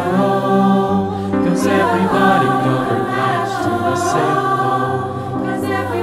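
Recorded mixed-voice choir singing slow, sustained chords that change about once a second, with the sung words' hissing 's' sounds coming through now and then.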